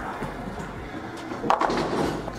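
Bowling ball rolling down the lane, then striking the pins about a second and a half in with a sudden clatter that dies away.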